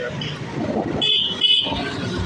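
A vehicle horn beeps twice in quick succession, about a second in, over the rumble of road traffic.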